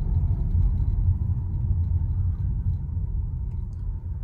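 Low road and tyre rumble inside a Tesla's cabin as the car slows down, fading gradually as the speed drops.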